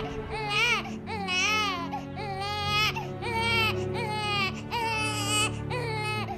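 Newborn baby crying in a string of short wails, each rising and falling in pitch, coming about every two-thirds of a second, over soft music of steady held low tones.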